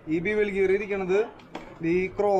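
A man's voice in long, drawn-out held tones, twice, with a faint metallic click between them.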